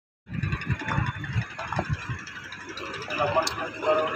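People's voices talking, with an uneven low rumble in the first two seconds.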